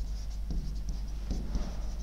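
Stylus writing on a digital whiteboard screen: faint scratching of the pen tip with a few light taps as letters are drawn.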